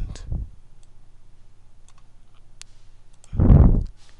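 A few sparse computer mouse clicks over a steady low electrical hum. Near the end comes a louder short burst of low rumbling noise, about half a second long.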